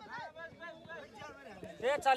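Men's voices calling faintly across an open field, with a louder call near the end.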